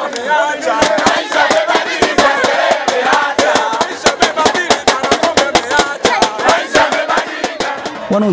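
A crowd of people singing and chanting together to a beaten drum, the rapid drum strokes starting about a second in.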